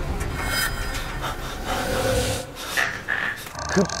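Several quick, heavy panting breaths and gasps of frightened people, easing off after about two and a half seconds.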